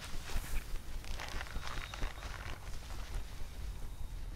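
Irregular rustling and scuffing of leaf litter and gear, over a steady low rumble.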